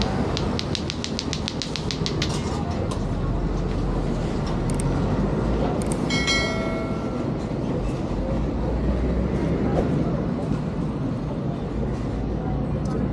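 Busy market ambience: steady crowd chatter over a dense background noise. A quick run of clicks speeds up in the first two seconds, and a short ringing tone sounds about six seconds in.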